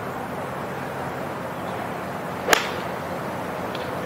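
A single sharp crack of a golf club striking the ball from a fairway bunker about two and a half seconds in, over a steady background hiss of outdoor tournament ambience.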